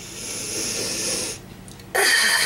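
A long, deep sniff through the nose at a small pot of deodorant held against the nostrils. The sniff ends about a second and a half in.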